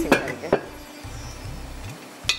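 Chicken frying in oil in a covered pan, a faint steady sizzle, with a sharp knock of kitchenware about half a second in.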